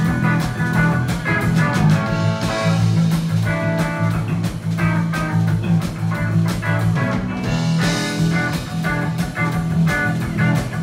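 Live rock band playing: electric guitar, bass guitar and drum kit, with a steady beat and a strong bass line.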